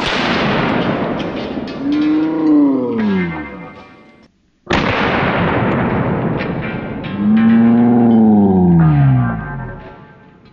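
Two slowed-down .500 S&W Magnum revolver shots, one at the start and one about five seconds in. Each is a sudden heavy boom that trails off over about four seconds, with a low droning tone that rises and then falls.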